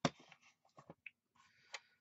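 A plastic Tonic paper trimmer set down on a cutting mat with one sharp knock, followed by small clicks and light paper rustling as card is shifted and lined up on it.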